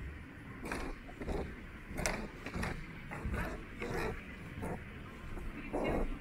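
Footsteps of a person walking at an even pace on a hard museum floor, about three steps every two seconds, over a low rumble.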